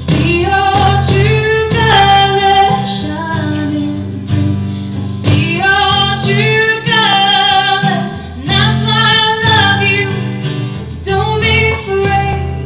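A woman singing a slow ballad live, accompanied by strummed acoustic guitar.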